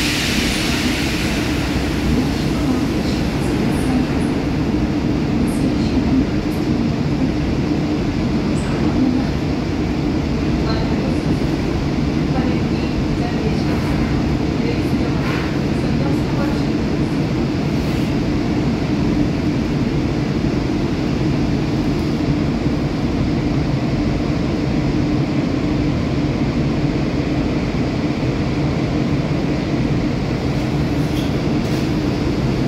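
Interior running noise of a Korail Seoul Line 3 electric subway train, set 395, at a steady speed: a constant rumble of wheels on rails with a steady low hum. A short hiss at the very start fades within about two seconds.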